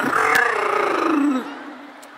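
A person's voice making one long, rough, trilled call that falls in pitch and fades after about a second and a half, in the manner of a sorority call.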